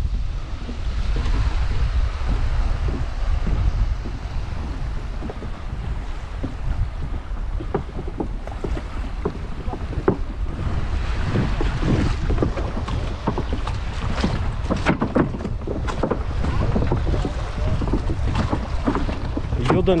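Wind buffeting the microphone over waves washing and splashing against a low wooden pier. From about halfway through, scattered knocks from the pier's wooden boards underfoot, most frequent near the end.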